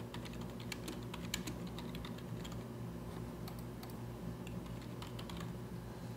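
Computer keyboard typing: faint, irregular keystrokes as text is entered, over a low steady hum.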